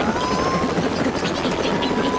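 Cartoon helicopter sound effect: the overhead rotor of a home-built construction-kit flying machine spinning with a fast, steady chopping rattle as it lifts off. A thin whistling tone slides up near the start and then holds.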